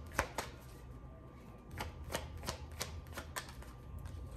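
A deck of tarot cards being shuffled by hand: sharp card slaps, two at the start, then after a pause of about a second a run of about three a second.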